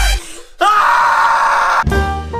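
Electronic music cuts out, and after a brief pause a man lets out a loud, drawn-out yell of about a second that stops abruptly. Jazzy brass music starts right at the end.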